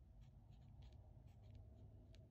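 Faint scratching of a black marker tip on journal paper as block letters are written, in short separate strokes.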